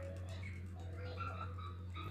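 Faint squeaks and scratches of a pen tip on paper as a sign is written over, above a steady low electrical hum.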